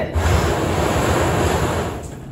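Many plastic numbered balls churning and rattling together in a wooden drawing cabinet as they are stirred up before a ball is drawn. It is a dense rushing rattle that stops just before the end.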